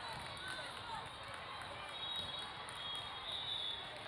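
Indoor sports-hall ambience between volleyball rallies: a steady wash of scattered voices and crowd chatter from players and spectators, with no ball contact or whistle standing out.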